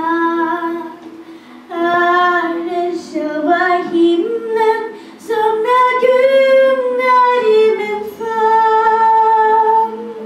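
A young girl singing a slow ballad into a handheld microphone, in several phrases with short breaks between them, over quiet accompaniment. Near the end she holds one long note.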